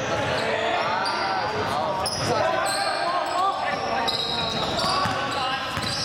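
Basketball play on a hardwood court: sneakers squeaking in many short high-pitched chirps, a basketball bouncing, and players' voices calling out.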